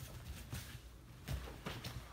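Faint shuffling of bare feet on a judo mat and rustling of heavy cotton gi fabric as two judoka grip and step in for an osoto gari throw, with two soft taps in the second half.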